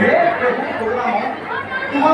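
Speech: people talking, with chatter behind.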